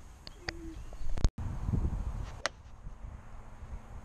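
Golf clubs striking balls at a driving range. One loud, sharp crack comes just over a second in, and a thinner click follows about a second later. A brief low hooting note sounds near the start.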